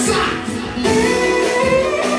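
A live wedding band playing dance music with a singer, keyboard among the instruments. The music thins briefly about half a second in, then comes back in full just before the one-second mark.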